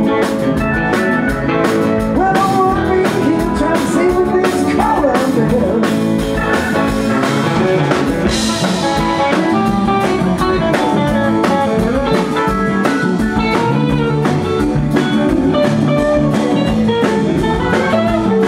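Live blues-rock band playing: lead Stratocaster-style electric guitar with bending notes over a drum kit keeping a steady beat.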